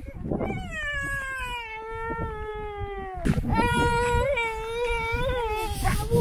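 A young child whining in two long drawn-out cries, the first slowly falling in pitch, the second held steady with small wavers: a tired, cranky toddler.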